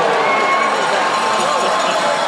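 Ice hockey arena crowd: many voices talking and calling at once in a steady hubbub, with no single voice standing out.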